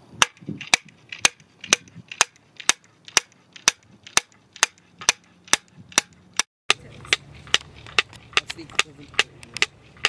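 Two wooden boards slapped together in a steady rhythm, about two slaps a second, kept in time so that each slap lands on the echo of the one before coming back off a building wall. After a short break near the middle, the slapping carries on at the same pace.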